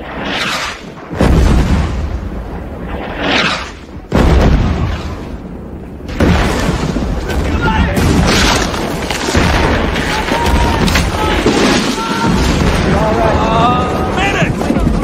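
Artillery shells exploding in a forest as film battle sound: three heavy blasts about a second, four seconds and six seconds in, the first two each preceded by a brief rushing hiss. A continuous din of explosions and battle noise follows.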